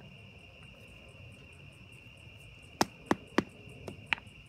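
Three quick taps of a rubber mallet on a wooden ramming rod near the end, compacting bentonite clay into a tube, over steady chirring of crickets.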